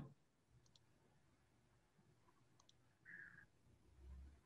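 Near silence, with two faint computer-mouse clicks, about two seconds apart.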